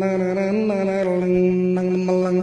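A man's voice imitating a saz with his mouth: a steady low drone held under quick syllables that step the melody up and down.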